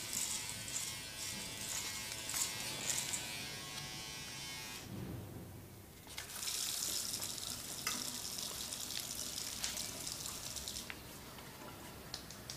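Faint buzz of an electric razor for about five seconds, then a short pause and an even hiss like water running from a tap, with a few light clicks.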